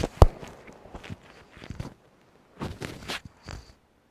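A few short knocks and clatters of objects being handled and set down at an altar: one just after the start, then a quick cluster about two and a half to three and a half seconds in.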